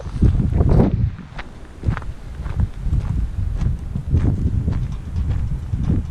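Wind buffeting the microphone of a camera on a moving motorcycle, in uneven low gusts.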